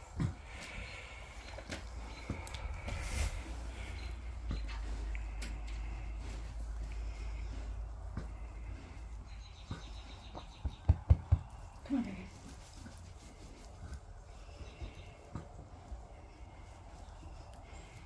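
A towel rubbing the wet coat of a newborn foal lying in straw, a steady rustling to dry and stimulate it after birth. A few sharp knocks come about eleven seconds in, followed by a short low sound falling in pitch.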